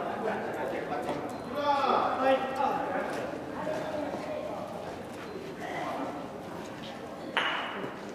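People's voices talking across a large, echoing covered hall, and near the end a single sharp clack of a gateball mallet striking a ball.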